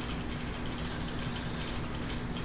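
Steady background hiss with a low, even hum, the room noise picked up by a computer microphone during a pause in talk, with a faint click near the end.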